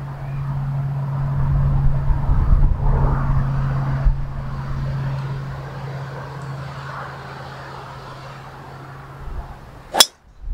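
Strong wind buffeting the microphone in gusts, rising in the first few seconds and then easing, over a steady low hum. Right at the end comes one sharp crack as a driver strikes a golf ball off the tee.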